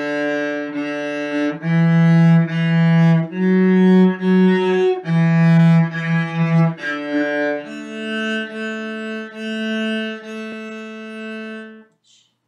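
Cello bowed in slow, even notes, playing a simple beginner melody. It goes D, D, E, E, F-sharp, F-sharp, E, E, then a D on the open D string, and ends on four A's on the open A string, the last held longer.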